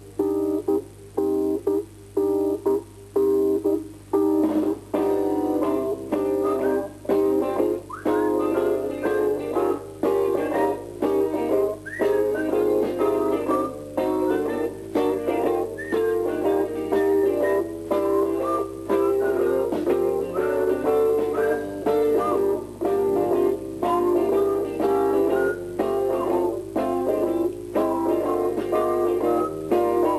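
Guitar music: a quick run of plucked notes in a steady rhythm, a few of them bent or slid in pitch, over a faint steady low hum.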